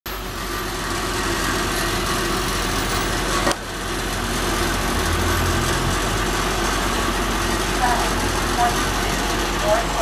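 NJ Transit NABI 40-SFW city bus's diesel engine running steadily as it stands at the curb, with a deeper rumble swelling about halfway through. Brief voices come in near the end.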